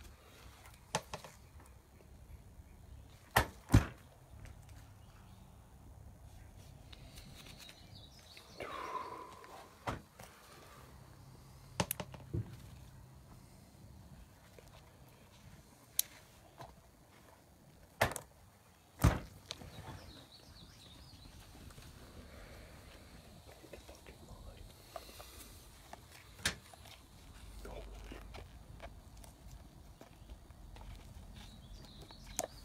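Scattered sharp clicks and knocks, about a dozen spread out, from a card-break briefcase and the box inside it being handled and opened. One brief falling tone about nine seconds in.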